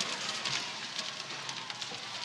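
Steady background noise, a hiss-like haze with faint crackles, between lines of dialogue.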